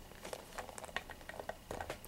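Faint handling noises: light clicks and rustling as small plastic toy figurines are picked up, moved and set down.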